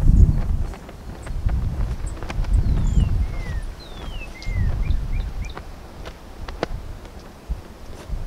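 Wind gusting on the microphone in low rumbles that rise and fall, with birds calling in a few descending whistled notes and short chirps, and occasional sharp clicks.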